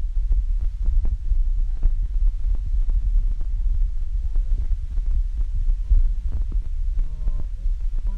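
Low, steady rumble on a handheld phone's microphone, broken by many small knocks and thuds, as in wind buffeting and handling noise. A brief faint voice comes in near the end.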